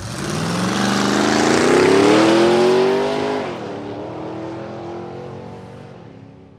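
Jaguar XK's V8 engine accelerating hard. Its pitch climbs for about three seconds, drops suddenly at an upshift, then holds lower and fades away near the end.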